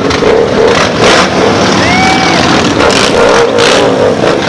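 A group of cruiser motorcycles riding past in a column, their engines running loudly and steadily.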